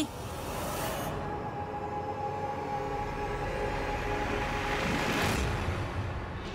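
Tense dramatic background score of sustained, held tones over a low rumble, swelling about five seconds in.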